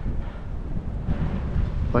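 Wind buffeting the microphone in a pause between words, a steady low rumble.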